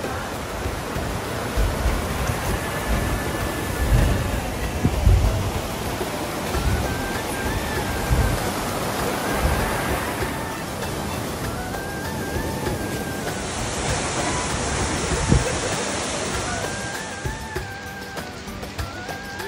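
A fast-flowing rocky stream rushing steadily, with background music carrying a melody over the water noise. A few low thumps stand out about four to five seconds in.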